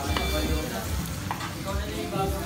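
Meat sizzling on a ridged griddle pan while it is turned over with a metal utensil, with a couple of sharp clicks of metal on the pan. Background music plays underneath.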